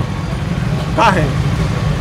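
A low, steady rumble, with a short spoken syllable about a second in.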